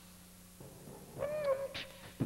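Human beatboxing into a handheld microphone: after a brief pause, a short hooted, pitched tone comes in about a second in, followed by a sharp hissed snare sound.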